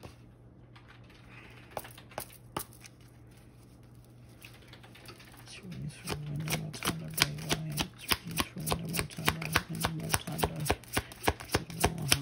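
Tarot deck being shuffled by hand: a few separate card clicks at first, then from about halfway a fast, continuous run of crisp card snaps, several a second. A low hum that starts and stops sits under the second half.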